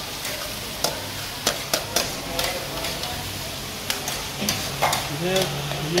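Chicken karahi sizzling in a metal karahi wok as a long metal spatula stirs it, with sharp scrapes and clinks of metal on the pan every second or so.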